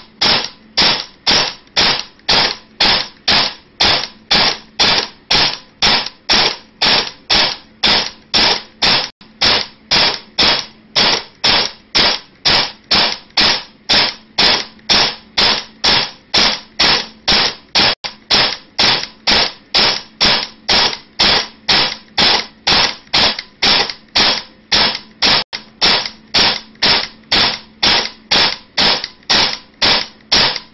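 ICS M4 airsoft electric gun (AEG), fitted with an SHS high-torque motor and an M110 spring and run from an 11.1 V LiPo, firing single shots on semi-automatic at an even pace of about two shots a second.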